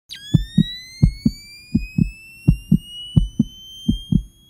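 Promo sound design: heartbeat-like paired low thumps, about one pair every 0.7 s, under a high electronic tone that rises slowly in pitch.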